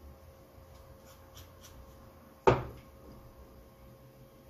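Small tools and parts being handled on a desk: a few faint ticks, then one sharp knock about two and a half seconds in.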